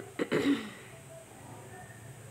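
A person clearing their throat: two quick coughs followed by a short voiced grunt, all within the first second.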